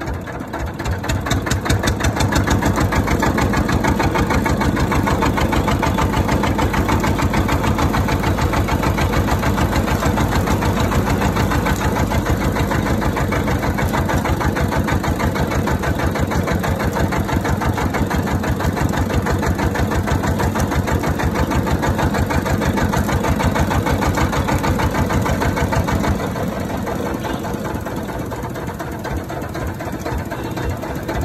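Motor-driven cast-iron roller sugarcane crusher running with a fast, even pulse as sugarcane stalks are pressed through its rollers. It grows louder about a second in and eases off a little near the end as the crushing finishes.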